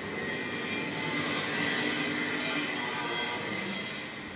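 A steady droning noise with a few faint held tones, rising slightly about a second in and easing toward the end.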